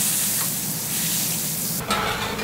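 Raw ground-beef patties sizzling loudly on a hot flat-top griddle as one is pressed flat, a steady hiss with a brief change in texture near the end.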